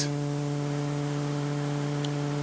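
Steady electrical hum at a few fixed pitches, with an even hiss underneath.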